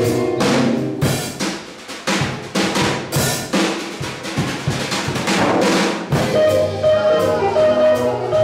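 Jazz drum kit playing a short break, a quick run of snare, bass drum and cymbal strokes with the other instruments mostly dropped out. About six seconds in, the band comes back in with held guitar and keyboard notes over the drums.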